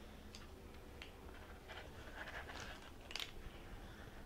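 Faint handling sounds of a small metal ice cream scoop working softened ice cream: soft scrapes against the carton and a few small clicks as a scoop is lifted out and set onto a cookie, the clearest click a little after three seconds.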